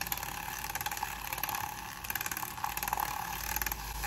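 Handheld battery-powered milk frother running in a glass, whisking matcha powder into hot water with a steady buzzing whir.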